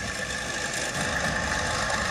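Heavy military launcher truck's engine running steadily, with a steady high whine over the engine noise.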